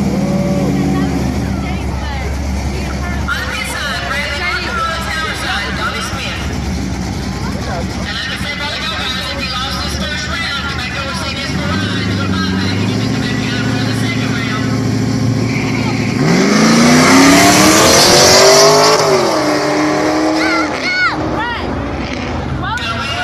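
A car's engine running at steady revs, then launching hard about three quarters of the way through: the pitch climbs steeply, dips at a gear shift and climbs again as the car pulls away. Voices of onlookers can be heard over the engine earlier on.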